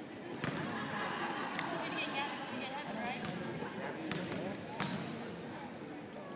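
A basketball bouncing on a hardwood gym floor as a player dribbles at the free-throw line: a few sharp bounces, the loudest near the end, over a murmur of voices in a large gym.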